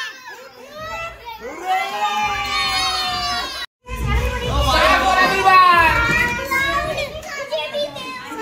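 Several young children talking and calling out over one another. The sound cuts out completely for a moment a little before four seconds in, then the voices come back louder.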